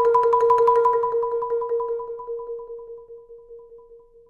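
Marimba played with Vic Firth Virtuoso Series mallets: rapid repeated strokes on two notes, about six a second, fading steadily and thinning out toward the end.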